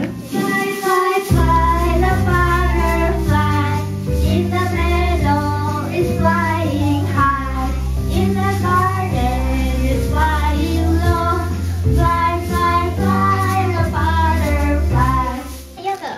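A children's song: children's voices singing a melody over an instrumental backing with a steady bass line. It starts about a second in and stops just before the end.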